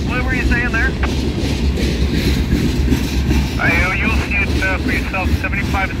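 Freight train of boxcars rolling slowly past: a steady low rumble of wheels on rail.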